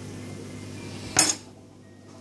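A metal table knife clinks sharply against a ceramic plate once, about a second in, with a brief ring after it.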